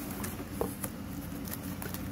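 A few light clicks and rustles of hands handling a boxed fan in its bubble wrap and cardboard, over a steady low hum.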